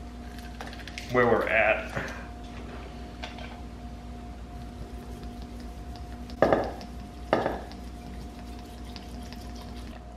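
Vinegar being poured from a bottle into a large glass jar packed with chopped vegetables and spices, with two short louder sounds from the pour about six and a half and seven and a half seconds in.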